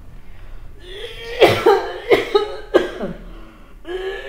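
A person coughing in a fit of about four hoarse, voiced coughs that begin about a second in, as of someone ill, acted in a radio play.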